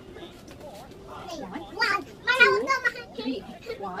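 A toddler's high-pitched voice calling out and squealing, loudest and highest about two seconds in. A woman's voice starts a count near the end.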